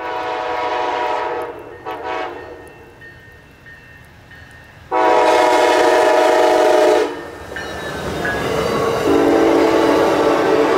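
Amtrak passenger train's Siemens Charger locomotive sounding its horn: a long blast, a short one about two seconds in, then the loudest, a long blast of about two seconds halfway through. Then the passenger coaches pass close by with a rising rush of wheels on rail.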